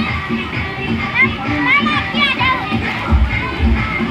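Children shouting and squealing as they play in the water, over loud dance music. The music's heavy bass beat comes in strongly about three seconds in.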